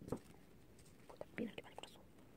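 Soft plastic clicks and taps from hair clips being handled and unclipped on a toy doll's synthetic hair. There is one tap at the very start and a short run of quick clicks in the second half.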